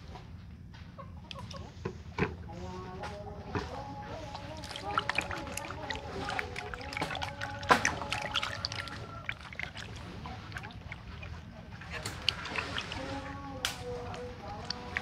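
Taro corms being washed by hand in a plastic bucket of water: water sloshing and small knocks and clicks as the corms are rubbed and rattle against each other and the bucket. A pitched background sound runs through the middle and again near the end.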